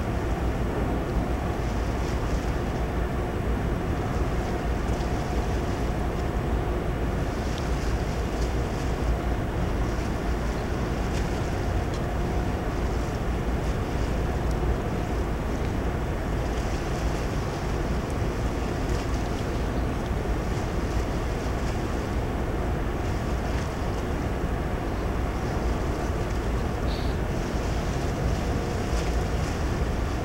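Steady wind noise on the microphone over a deep low rumble, with a faint steady machinery hum, as on the open deck of a ship.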